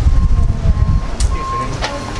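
Wind buffeting the camera microphone as it is carried outdoors: a heavy, uneven low rumble, strongest in the first second and easing off after that.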